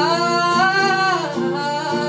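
Young man singing a Hindi pop ballad with acoustic guitar accompaniment: his voice rises into a long held note that falls away a little past the first second, over a strummed steel-string acoustic guitar.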